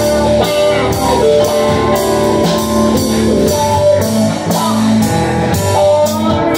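A live rock band playing an instrumental passage: electric guitar on a Stratocaster-style partscaster over a Nord Electro 2 stage keyboard and a drum kit. The drums keep a steady beat of about two hits a second.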